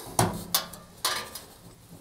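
Three small metallic clicks about half a second apart, then quieter handling: wire spade connectors being worked off a cooker grill element's terminals, with the wires knocking against the sheet-metal back panel.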